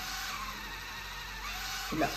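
Corded electric epilator running steadily while held against the skin of a forearm, a steady motor hum with a faint whine.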